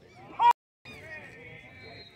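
A short, loud shout from a spectator close to the camera, rising in pitch, cut off by a brief drop-out in the audio about half a second in. Faint voices of the crowd follow.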